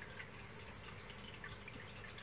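Faint trickling and dripping water from a reef aquarium's filtration, over a low steady hum.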